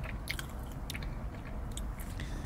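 A person chewing food with the mouth close to the microphone, with several short, crisp wet clicks spread through the chewing.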